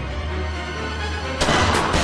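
Trailer score holding a low drone, then about one and a half seconds in a sudden loud bang, like a gunshot or blast effect, that rings on.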